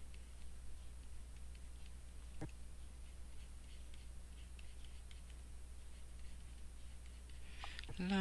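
Faint, soft ticks and scratches of a stylus drawing on a tablet, scattered through, with one sharper click about two and a half seconds in.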